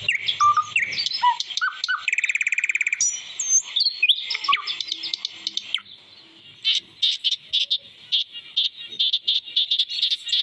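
Several birds calling and singing together: varied whistled and slurred notes, a fast buzzy trill about two seconds in, and in the second half a steady run of short sharp chips about four a second.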